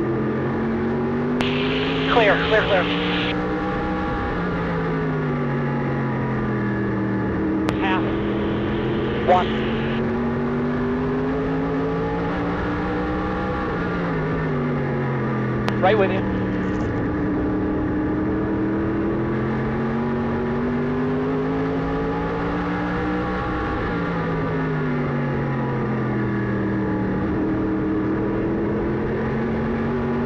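Race car engine heard from inside the cockpit, running at a moderate pace with its revs slowly rising and falling about three times, consistent with lapping under caution. Brief crackly two-way radio transmissions cut in a few times, near the start, around a third of the way in and about halfway through.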